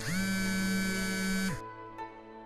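Smartphone alarm ringing: one loud electronic tone that swoops up in pitch at once, holds steady for about a second and a half, then drops away and stops.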